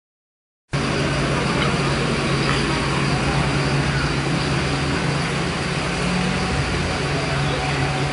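City bus engine idling steadily, a constant low hum, with people talking in the background.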